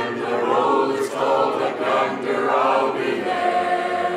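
A church congregation of men and women singing a hymn together, with one note held steady near the end.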